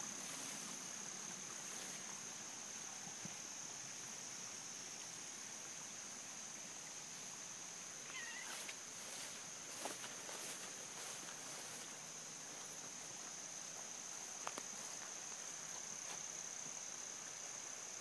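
Steady high-pitched insect chorus, with faint rustling and handling noises as the camera moves through vegetation; one short faint call a little past the middle.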